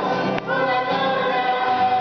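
A group of children and a woman singing a worship song together, holding long notes, with an acoustic guitar strummed along.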